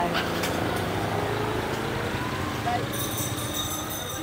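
Motorbike engine running at a steady low pitch, with faint talk in the background.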